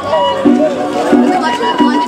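Wooden fipple flute playing a melody of held notes into a microphone, over a backing accompaniment that pulses about every two-thirds of a second.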